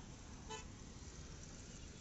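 Road traffic of auto-rickshaws, motorcycles and cars passing with a steady low rumble, and one short vehicle horn toot about half a second in.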